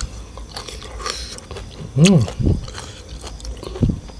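A man chewing and biting food, with small wet clicks and crunches, and a short hummed vocal sound about two seconds in.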